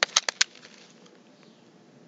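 A quick run of four sharp clicks within the first half second, then quiet room tone.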